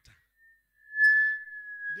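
Microphone feedback through the PA system: a single high ringing tone that swells up about a second in and holds, drifting slightly lower in pitch.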